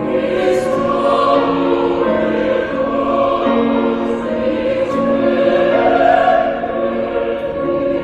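Church choir singing in parts, moving slowly through long held chords.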